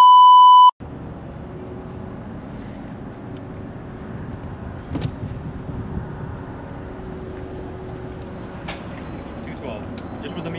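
A loud, short electronic beep, a single steady tone lasting under a second, at the start. Then the steady low hum of a car's cabin as it sits waiting, with a faint knock about halfway through and another near the end.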